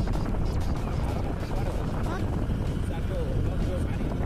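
Steady low rumble of wind buffeting the microphone while moving in a vehicle, with faint voices in the background.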